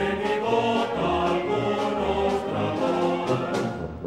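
Music: many voices singing together over instruments with a steady beat.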